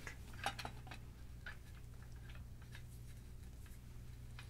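Faint scattered clicks and light clinks from a spider-type microphone shock mount being handled and fitted onto the threaded top of a mic stand, the clearest about half a second in.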